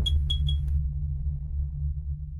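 Electronic logo-intro sound effect: a deep low drone that slowly fades, with three quick high pings, each starting with a click, in the first second.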